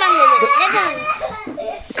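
A young boy crying and whining in a high, wavering voice, with one long drawn-out cry in the first second.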